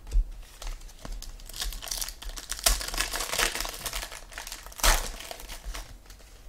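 Plastic card packaging crinkling and crackling as trading cards are handled. There is a sharp tap just after the start and a louder crinkle near the end.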